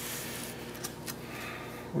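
Faint steady background hiss with a low hum, and soft rustling of paper as the pages of a spiral notebook are handled and turned.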